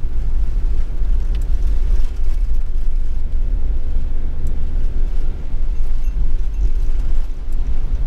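Steady low rumble of a camping car driving on a wet road, engine and tyre noise heard from inside the cab.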